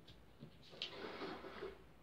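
Faint handling of cardboard picture cards on sticks as one card is swapped for another: a couple of small clicks, then a soft rustle.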